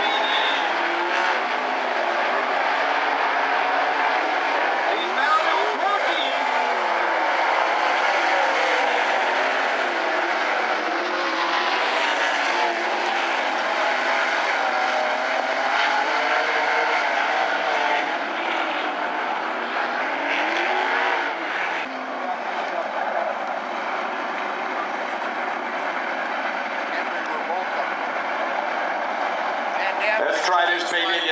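Several 360 sprint cars' V8 engines running on a dirt oval, their pitch rising and falling as they go round the track.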